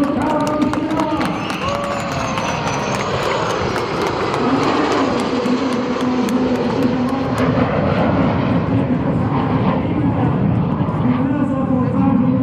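Jet noise from a low flypast of a Boeing 737 airliner escorted by F-16 fighter jets: a steady rushing din. Scattered hand claps through the first two-thirds, and voices.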